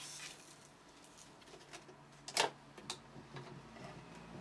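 Fabric being handled and positioned at a sewing machine, with a few small clicks, the sharpest about two and a half seconds in and another about half a second later. The machine itself is not yet stitching.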